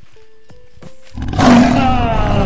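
A loud lion's roar sound effect that starts suddenly a little over a second in and slides down in pitch.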